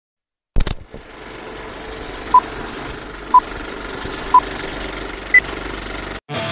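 Film projector sound effect: a sharp click as it starts, then a steady mechanical rattle with a hum. Over it comes a countdown of three short beeps a second apart and a fourth, higher beep.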